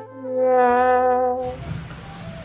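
Comic 'sad trombone' brass sound effect: the long held last note of its descending 'wah-wah-wah-waaah' phrase, fading out about a second and a half in.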